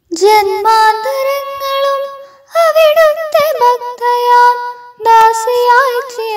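A solo female voice sings a Malayalam poem (kavitha) as a melodic recitation, without accompaniment. It comes in three phrases of held, slightly wavering notes, starting about two and a half seconds apart.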